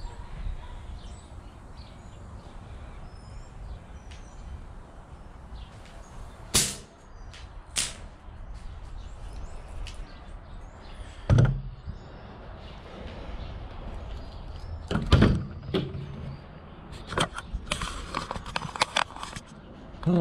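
Outdoor background with a steady low rumble and faint bird chirps, broken by a few sharp knocks and clunks, then a run of clicks and rattles near the end.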